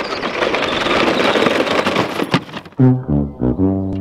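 A child's electric ride-on toy car crunching over gravel, with a knock about two seconds in as it bumps the cardboard box. Then a sad-trombone fail sound effect: a few falling 'wah' notes ending on a long low held note, marking that the box did not break.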